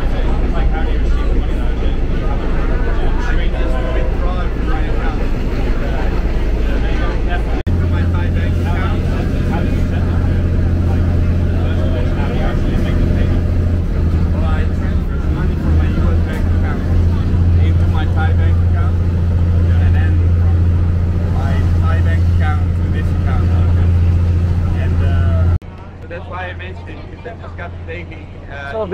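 Passenger train running, heard from inside a carriage with open windows: a loud, steady low rumble with voices over it. The rumble changes abruptly about a third of the way in and drops sharply near the end.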